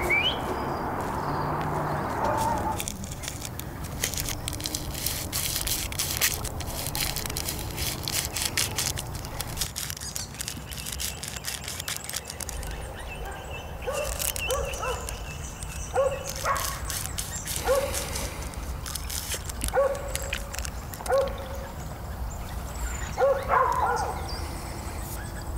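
A dog barking, short single barks repeated about seven times a second or two apart in the second half. Before them, a stretch of dense crackling.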